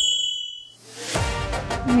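A bright metallic ding sound effect that rings briefly at the start, followed by a swelling hiss that leads into background music about a second in.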